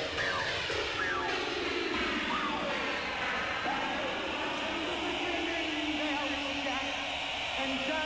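Techno from a DJ playing vinyl, full of gliding, wavering synth tones that sweep up and down.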